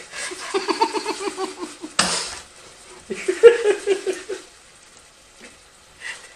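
People laughing hard in two runs of quick ha-ha pulses, with a short hissy burst about two seconds in. The laughter dies away a little after four seconds.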